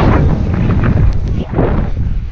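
Loud wind rumble on a helmet-mounted camera's microphone, with the hiss of skis cutting through deep powder snow swelling twice as the skier turns.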